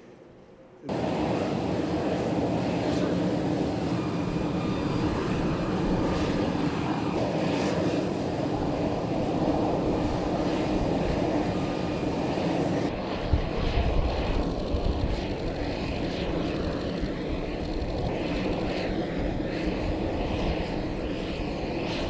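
Steady aircraft engine noise across an airfield apron. It starts suddenly about a second in, with a thin high whine that cuts off abruptly about thirteen seconds in, followed by a deeper rumble.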